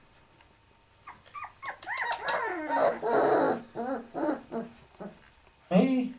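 A litter of puppies yelping, whining and growling as they tussle, a few seconds of short cries that bend up and down in pitch. A short loud burst comes near the end.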